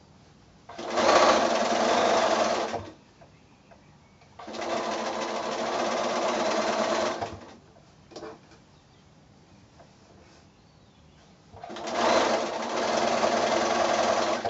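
Bernina sewing machine stitching a seam through pieced quilt patchwork, running in three spells of about two to three seconds each with short stops between.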